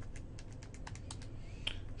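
A quick run of about a dozen light key clicks, bunched in the middle, as keys are tapped to type in a calculation.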